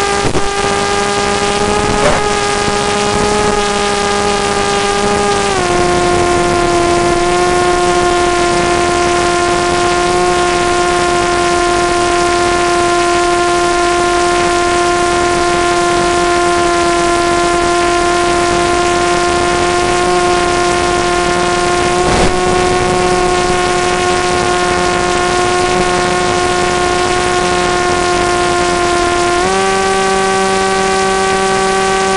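FPV model aircraft's motor and propeller running as a steady whine over a steady hiss. About five seconds in, the pitch drops a step as the throttle is eased, and it steps back up right at the end.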